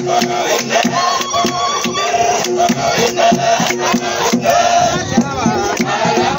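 A group of men singing a dance song over steady, rhythmic hand clapping. A higher, wavering voice rises over them near the end.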